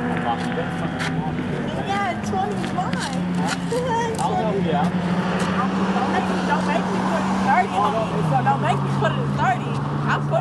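Race car engines running on the circuit, with one steady engine note that steps down in pitch about eight seconds in, under people chatting in the background.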